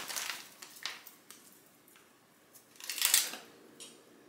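Foil wrappers crinkling in a few short bursts as Hershey's Kisses are unwrapped by hand, the loudest burst about three seconds in.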